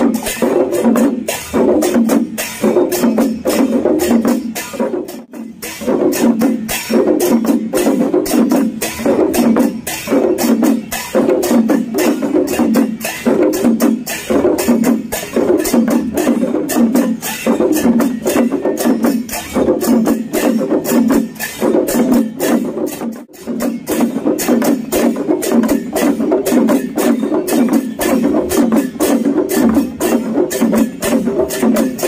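An ensemble of Newar dhimay barrel drums played together in a fast, steady rhythm, with a brief break in the beat about five seconds in and another a little past twenty seconds.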